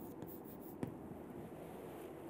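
Chalk writing on a chalkboard: faint scratching strokes with one sharper tap a little under a second in.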